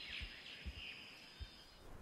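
Faint forest ambience with a few soft bird chirps and two brief, soft low thuds less than a second apart.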